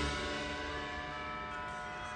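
An indoor drumline's front ensemble holds a sustained chord that rings out and slowly fades, many steady pitches sounding together.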